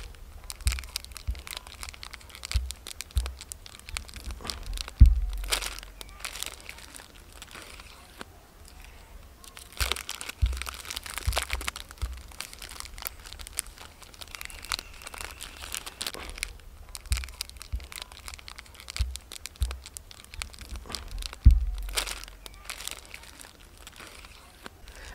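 Plastic wrapper of a Cadbury Dairy Milk Silk bar crinkling and tearing as it is peeled open by hand, with irregular sharp crackles. A few louder rips come about five seconds in, around ten seconds in and near the end.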